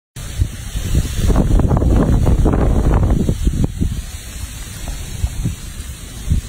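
Wind buffeting the microphone, a heavy, crackling rumble through the first four seconds that then eases off.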